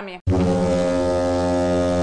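A loud, low, steady horn-like tone, rich in overtones and holding one unchanging pitch. It starts abruptly about a quarter of a second in and lasts nearly two seconds, a sound effect laid into the edit.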